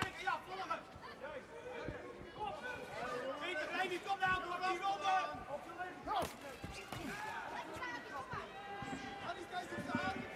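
Kickboxing bout heard from ringside: overlapping shouts and calls from the crowd and corners, cut by a few sharp thuds of kicks and punches landing on the fighters.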